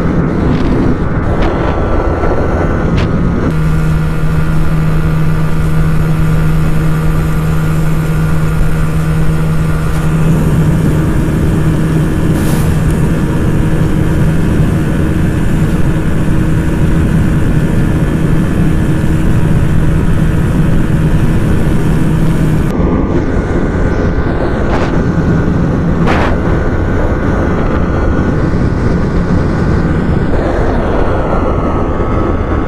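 Small single-cylinder sport motorcycles held near top speed in sixth gear, about 145 km/h, the engine note mixed with wind rush. First a Yamaha R15 V3; about three and a half seconds in, it switches to a GPX Demon GR165R whose engine gives a steady drone; with about seven seconds left, it is back to the Yamaha.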